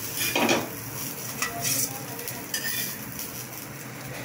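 A spatula scraping across a flat tawa as a fried egg-and-cabbage patty is lifted off it, in three short strokes, the loudest about half a second in, over a light sizzle of frying.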